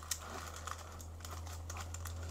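Faint rustling and small crinkling clicks of thin foil and paper sheets being handled, over a steady low hum.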